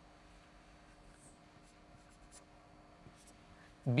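Felt-tip marker writing letters on a whiteboard: faint short scratchy strokes, several in a row, over a faint steady hum.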